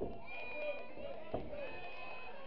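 Spectators talking and calling out, with two dull thumps from the wrestling ring, one at the start and one about a second and a half in.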